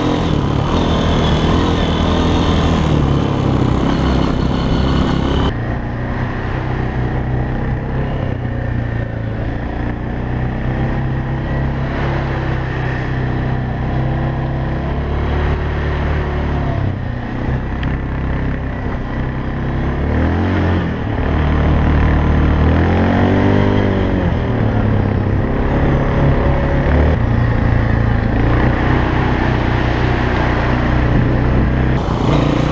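Honda CRF230F dirt bike's single-cylinder four-stroke engine running under load, then, after a sudden change about five seconds in, a quad bike's engine running, its revs rising and falling about three-quarters of the way through as it rides on through mud and water.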